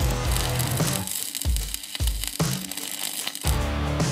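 Background music playing over the crackle of a stick-welding arc as an electrode lays a weld on steel.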